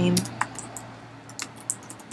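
Computer keyboard keys being typed: about five separate keystrokes, spaced unevenly, most in the second half, entering a password.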